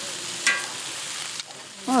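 Sausages sizzling on a large round griddle pan, a steady frying hiss, with a brief sharp sound about half a second in.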